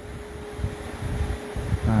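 A pause in a man's speech, filled by a steady low room hum with a faint steady tone running through it; he says one short word near the end.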